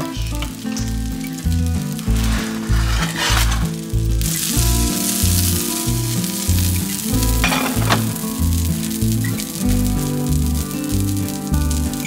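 Cooking fat sizzling in a hot nonstick frying pan on an electric hob, the hiss growing much louder about four seconds in. Background music with a steady bass beat plays throughout.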